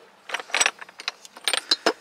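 Ceramic and glass salt and pepper shakers clinking and knocking against one another as hands rummage through a box full of them. The clinks come in several quick clusters, with short bright rings.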